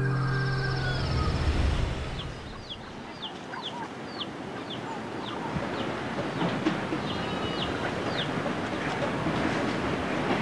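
Outdoor bird calls: a run of short, high chirps, each sliding downward, about two a second, over a steady hiss of outdoor background noise. Music fades out during the first two seconds.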